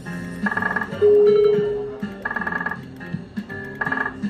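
Electronic sound effects and jingle from a bar video slot machine while its reels spin. A burst of bright, rattling chime tones repeats about every second and a half over a low looping tune. About a second in, one loud single tone sounds and fades away over the next second.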